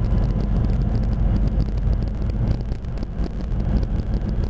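A steady low rumble with a faint hum, holding an even level throughout.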